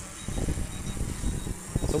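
DJI Phantom 4 Pro quadcopter's propellers buzzing as it descends to land on its own, with an uneven low rumble underneath. A voice starts near the end.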